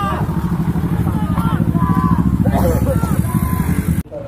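A vehicle engine runs loud and close with a fast, rumbling pulse, while men shout over it.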